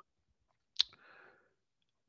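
A single sharp computer mouse click a little under a second in, as a browser tab is clicked.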